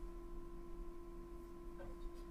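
Quiet room tone: a faint steady hum carrying two steady tones, with one brief faint sound near the end.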